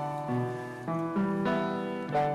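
A hymn tune played on a keyboard, in sustained chords that change every half second or so: the instrumental introduction before the congregation sings.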